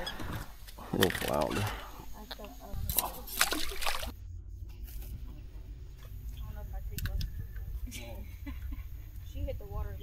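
Water sloshing and lapping against a small boat's hull, under indistinct voices and a low steady rumble.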